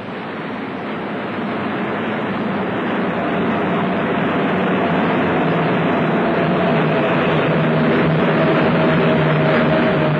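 Piston aircraft engines droning steadily, with a held engine hum, growing louder over the first few seconds.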